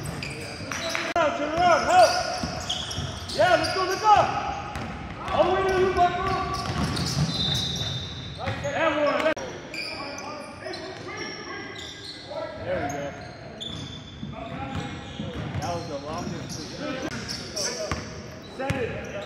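Basketball bouncing on a hardwood gym floor amid short sneaker squeaks and players' calls, echoing in a large gymnasium.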